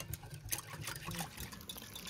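Wire whisk stirring pomegranate juice in a glass bowl: liquid sloshing, with many light clicks of the wires against the glass.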